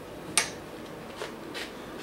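Steel milling tooling (arbors and collets) clinking in a tool drawer as it is handled: one sharp metallic click about half a second in, then a couple of fainter ticks.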